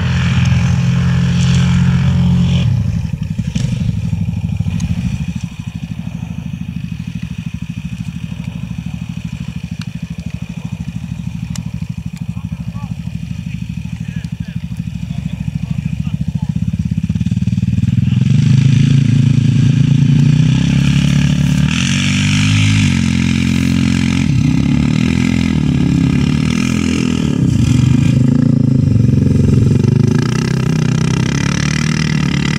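Quad bike (ATV) engines: loud for the first few seconds, then a lower, steady running, as of machines idling, then revving up and down repeatedly from a little past halfway as a quad churns through deep mud.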